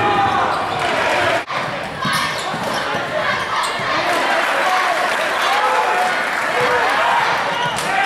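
Gym game sound: a basketball dribbling on the court under a crowd of overlapping voices and shouts in a large hall, with a brief break about a second and a half in.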